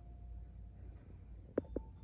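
A quiet room with a low steady hum, and two quick clicks close together about one and a half seconds in.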